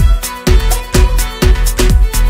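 Electronic dance music with a steady kick drum on every beat, about two beats a second.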